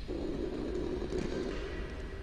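Microphone handling noise: a dull rumble that starts suddenly and lasts nearly two seconds as a microphone is gripped and adjusted on its stand.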